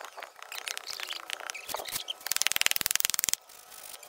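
A wooden stick tamping and levelling damp cement-sand mix in a wooden block mould: scattered taps and scrapes, then a fast, loud run of strokes from about two seconds in that lasts about a second and stops abruptly.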